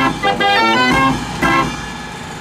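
52-key Gasparini fairground organ playing: a run of bright pipe notes ending in a short chord about a second and a half in, after which the sound falls away.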